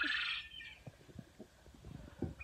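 A brief raspy bird call in the first half second, then only faint low knocks and rumble.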